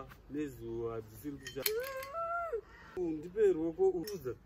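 A woman's voice whining and squealing without words, with a sharp click about a second and a half in.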